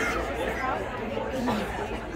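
Indistinct background chatter of several people's voices in a large hall, with no one voice standing out.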